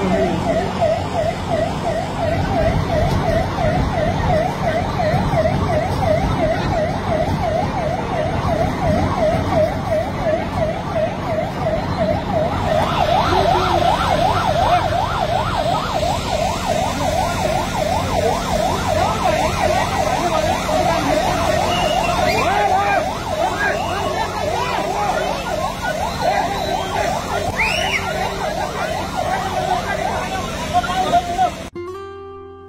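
Emergency vehicle siren sounding a fast, steady warble, the pitch swinging up and down several times a second. A second, higher-pitched warble joins briefly around the middle.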